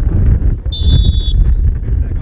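A referee's whistle gives one short, shrill blast about two-thirds of a second in, over the rumble of wind on the microphone.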